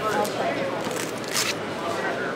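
Voices of a busy hall talking, with a brief rustling scrape of a fabric corset being handled at the waist partway through.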